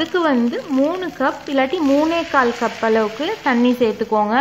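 A woman talking without pause over rice faintly sizzling as it is stirred with a wooden spatula in a hot pan.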